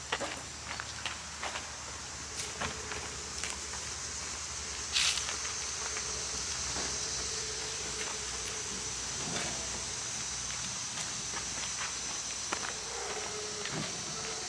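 Outdoor summer ambience: a steady high-pitched insect chorus with scattered footsteps and small handling noises, and one brief louder rustle about five seconds in.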